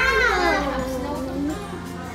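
A voice holding a long sung note that rises at the start and then slides down in pitch, with music.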